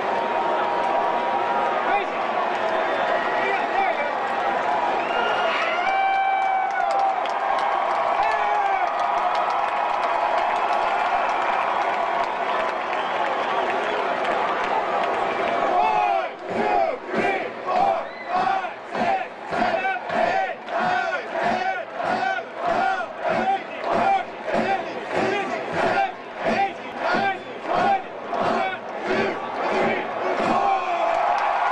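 Stadium crowd cheering and whooping. About halfway through it switches to shouting in unison in a quick, even rhythm, counting off the mascot's push-ups after a score.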